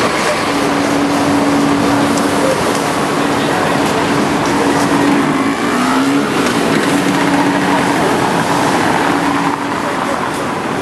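Busy city-street traffic noise with a steady engine hum that briefly dips and rises about six seconds in, and passers-by talking.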